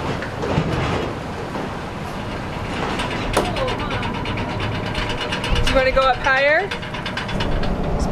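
Steady low rumble of a car ferry's engines under way, heard from the open deck. Brief voices cut in about three seconds in and again around six seconds.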